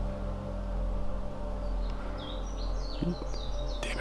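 A small songbird chirping: a run of short, high, falling notes in the second half, over a steady low hum.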